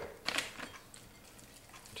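Light clicks and knocks of a spatula against a glass mixing bowl of cottage cheese, with a sharp pair of knocks about a third of a second in, then faint scattered ticks.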